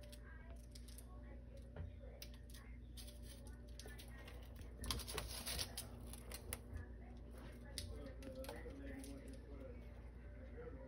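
Faint scattered small clicks, with a brief rustling scrape about five seconds in, over a low steady hum.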